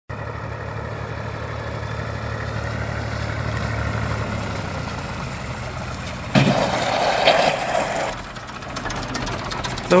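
Tractor engine running steadily. About six seconds in, a louder, rougher stretch of noise lasts a couple of seconds, then the sound drops back quieter.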